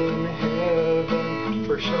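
Acoustic guitar strummed in a steady rhythm, the chords ringing between strokes. A man's singing voice comes in near the end.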